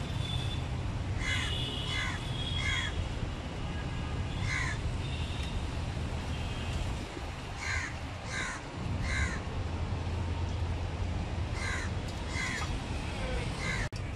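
Crows cawing repeatedly in short bursts of one to four harsh caws, about a dozen in all, over a steady low background rumble.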